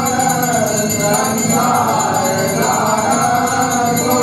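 Group of voices singing a Hindu devotional aarti hymn over a steady, evenly repeating percussion beat.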